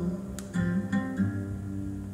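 Guitar picking a few ringing notes, starting about half a second in, in a short instrumental gap between sung lines of a song.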